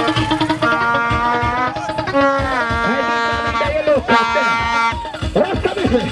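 Loud music with a steady beat and long held melody notes, with a brief downward pitch bend about two seconds in and a voice coming in near the end.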